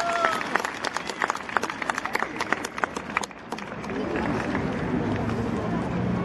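Crowd chatter with a quick run of sharp clicks and slaps over the first three seconds or so, then a low engine hum that comes in and holds toward the end.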